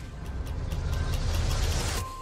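Cinematic trailer sound effect: a deep rumble under a rising rush of noise that swells louder over about two seconds and cuts off abruptly at the end.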